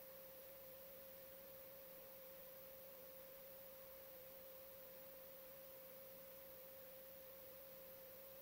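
Near silence: room tone with a faint steady hum at a single pitch that holds unchanged throughout.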